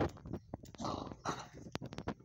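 A dog moving about and sniffing, with two short sniffs about a second in and sharp clicks of its claws on a concrete floor.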